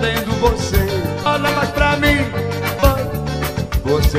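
Live forró band music: an accordion carries an instrumental passage over a steady drum beat.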